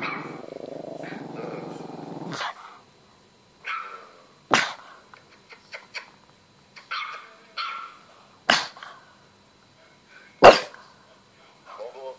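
Pug growling low and steadily for about two and a half seconds, then giving three sharp single barks a few seconds apart, the last and loudest near the end, with fainter short sounds between them.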